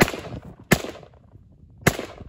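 Pioneer Arms AKM-pattern rifle in 7.62×39 firing three single shots in slow succession, roughly a second apart, the last near the end. Each shot is followed by a short decaying echo.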